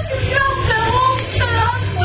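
A high-pitched voice singing a wordless tune with sliding notes, over a steady low hum.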